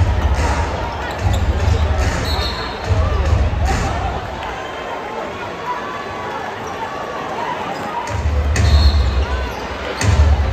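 Live arena sound of a basketball game: a ball dribbled on a hardwood court with heavy low thuds, sneakers giving brief squeaks, and crowd chatter underneath.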